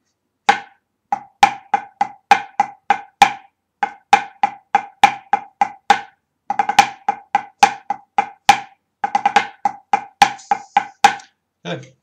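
Drumsticks playing a pipe band Swiss ruff exercise slowly in a triplet 12/8 count: a steady run of about four strokes a second, soft taps alternating with accented ones. In the second half the strokes bunch into quick ruffs leading onto the accented beat.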